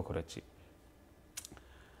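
A man's speech trailing off, then a pause with low room tone and one short, sharp click about one and a half seconds in.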